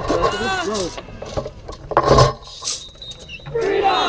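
Indistinct voices of people nearby, with a louder call about two seconds in and another falling call near the end; no drumming.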